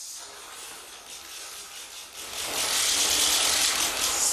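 A short laugh near the start, then about two seconds in a loud, dense clatter of many press camera shutters clicking rapidly at once.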